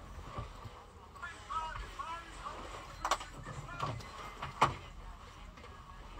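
Faint, indistinct voices in a small recording room, with two sharp clicks about three and four and a half seconds in; the second click is the loudest sound.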